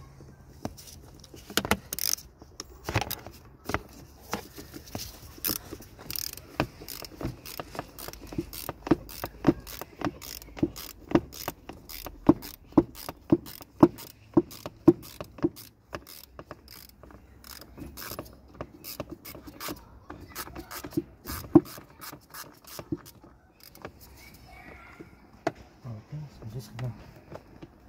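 Ratchet wrench clicking as it undoes a Torx T30 bolt on a mass air flow sensor housing: a long run of sharp clicks, about two a second, with short pauses between spells of turning.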